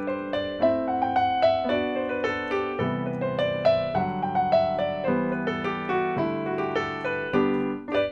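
Piano sound from a digital keyboard: a major scale played up and down in a rhythmic pattern in the right hand over sustained left-hand chords that change about once a second.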